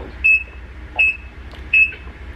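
Construction vehicle's reversing alarm beeping outside: a short high beep about every three-quarters of a second, three beeps here, over a steady low rumble.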